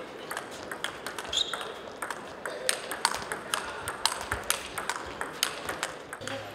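Table tennis ball being hit back and forth in a rally, sharp clicks off the rackets and the table a few times a second, over steady hall background noise.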